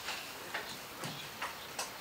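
A few faint, irregularly spaced clicks and taps over steady room noise.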